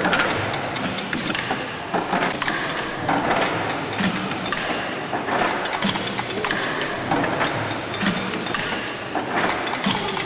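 Horizontal steam pumping engine running, its valve gear and lubricator mechanism making a rhythmic clatter of clicks and knocks that repeats about once a second.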